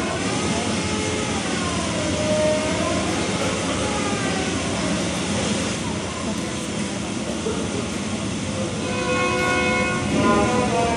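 Loud mix of children's voices on a stage, with long pitched notes that glide up and down early on and hold steady near the end.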